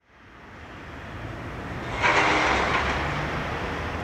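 Low outdoor urban rumble fading in from silence, with a louder rushing hiss for about a second halfway through.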